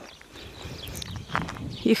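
Quiet footsteps scuffing on a dirt and gravel track, with a short crunch about one and a half seconds in.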